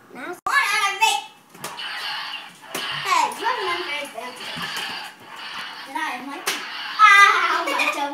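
Children shrieking and shouting without clear words during a play fight, with a few sharp knocks or smacks in between.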